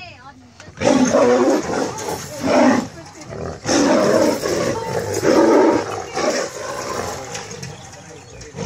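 Two tigers fighting, roaring and snarling in a series of loud bursts that start about a second in and come every second or so.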